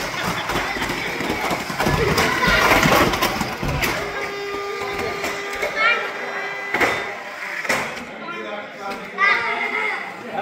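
Indistinct chatter of adults and children around an RC race track, with a few sharp knocks and a steady hum for a few seconds in the middle.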